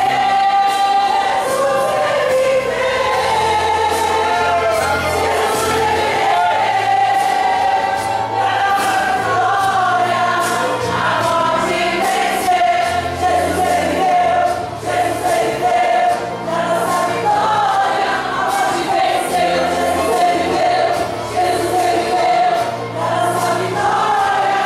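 A women's choir singing a gospel hymn in Portuguese, with low held bass notes from an instrumental accompaniment underneath.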